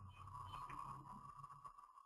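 Near silence: a faint steady hum with a thin high tone over it, stopping shortly before the end.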